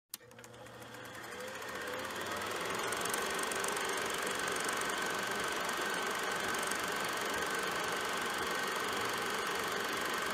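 Film projector running: a steady, fast mechanical clatter with a high whine, fading in over the first three seconds and then holding steady, after a brief click at the very start.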